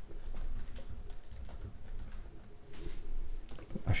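Typing on a computer keyboard: a quick run of key clicks as a command is typed out.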